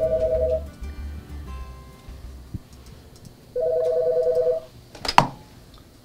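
Office desk phone ringing twice with an electronic two-tone trill, each ring about a second long. Near the end comes a sharp knock as the handset is picked up.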